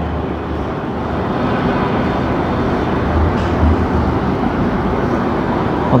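Steady background noise: a continuous low rumble and hiss with no distinct events.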